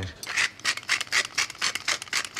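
Pepper mill being twisted over a bowl, grinding in a quick run of rasping crunches, about five a second.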